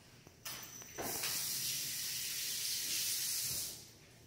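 A steady hissing noise that rises about a second in and holds evenly until it stops shortly before the end.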